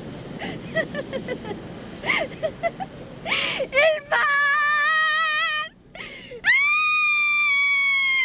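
A woman laughing in short bursts, then breaking into two long high-pitched shrieks: the first wavering, the second higher and held for about two seconds.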